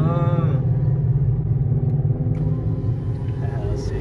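GMC pickup truck's engine and road noise heard inside the cab as the truck drives off, a steady low drone, with a brief vocal sound at the very start.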